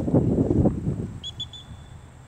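A low, uneven rumble of wind on the microphone. About a second in come three short, faint, high whistle pips and then a held note, typical of a dog-training whistle.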